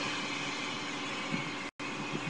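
Steady background hum and hiss between speech. The sound cuts out completely for an instant near the end.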